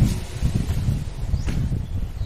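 Wind buffeting the microphone as an uneven low rumble, with a couple of footsteps on stone stairs.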